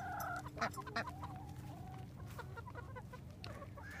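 Hens clucking quietly: a few short clucks and a thin, wavering drawn-out call.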